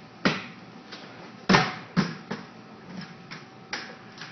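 Crutch tips and feet knocking on wooden stair steps during a clumsy attempt to climb stairs on crutches the wrong way: a few sharp knocks, the loudest about a second and a half in, with lighter taps after.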